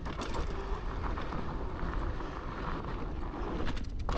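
Steady riding noise from a fat-tyre e-bike rolling along a dirt forest trail, with wind on the camera microphone and the rumble of the tyres on the ground.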